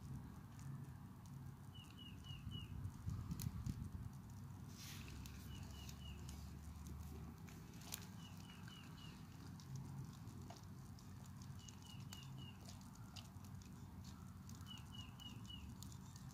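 A songbird repeating a short phrase of four quick chirps about every three seconds, faint, with a few sharp crackles from a smouldering wood fire.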